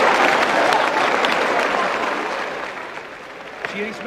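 Audience applause after a joke's punchline, dying away gradually over the last couple of seconds.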